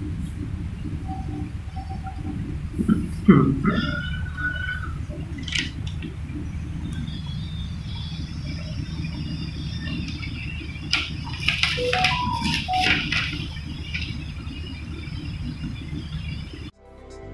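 Pages of a large paper newsletter being handled and turned, in brief rustles, over a steady low hum, with a short laugh about four seconds in.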